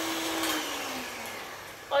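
A small electric appliance motor winding down: its steady hum drops in pitch and fades away over about a second.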